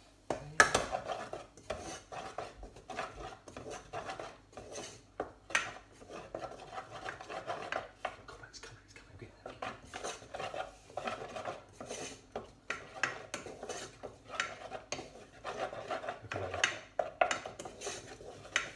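A spoon stirring and scraping risotto rice in a small pan, with irregular clicks and scrapes against the pan as the rice toasts with onions, garlic and butter.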